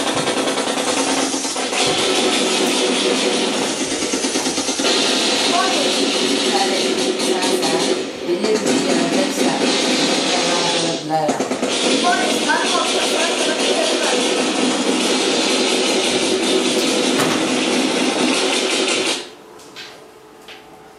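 Loud played-back recording of a voice and music over a dense, noisy background, cutting off abruptly near the end.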